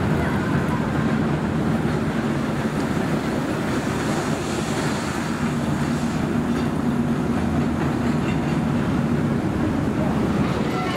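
Suspended roller coaster train running along its steel track overhead, a steady rolling rumble of wheels on rail as it passes.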